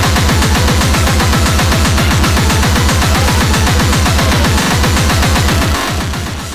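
Speedcore/hardcore electronic music: a fast, even run of distorted kick drums, each dropping in pitch, under a harsh noisy top layer. The kicks thin out for a moment near the end.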